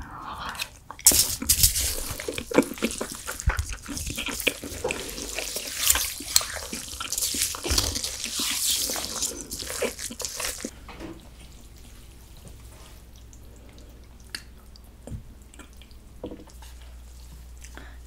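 Liquid being poured into a bowl of icy, slushy naengmyeon broth and the noodles worked through it: dense sloshing and crackling with many small clicks for about ten seconds, then fainter scattered clicks.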